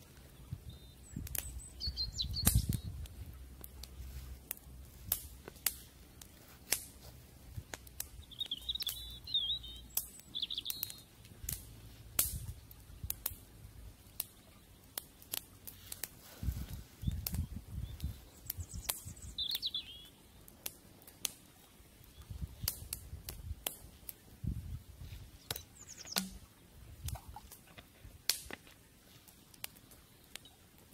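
Small wood campfire crackling with frequent sharp pops, while a small bird chirps a few times.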